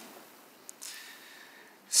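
A speaker's in-breath close to a podium microphone: a small mouth click, then a soft breathy hiss lasting about a second before she speaks again.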